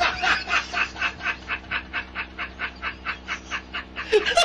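A man laughing in a long, unbroken run of quick, breathy bursts, about six a second.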